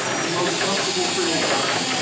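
Overlapping, indistinct chatter of several children's voices over a steady hiss.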